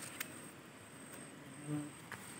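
Faint, steady, high-pitched buzz of insects in the surrounding fields. There is one light click at the start, and a brief low hum from a voice near the end.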